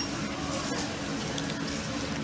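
Shop ambience with faint background voices, and a faint click about three-quarters of a second in.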